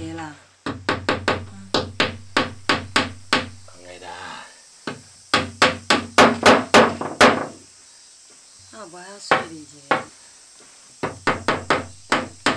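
Hammer driving nails into a wooden board, in three runs of sharp strikes about four a second with short pauses between them.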